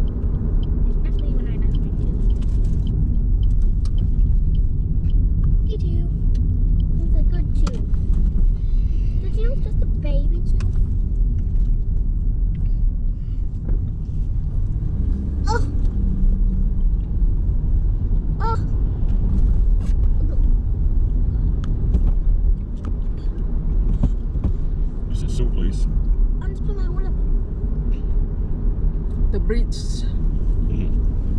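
Steady low road and engine rumble heard from inside the cabin of a car driving along a street, with no sharp events standing out.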